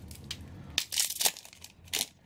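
Crinkling and rustling of a foil booster-pack wrapper and trading cards being handled close to the microphone, with a few louder irregular crackles about a second in and near the end.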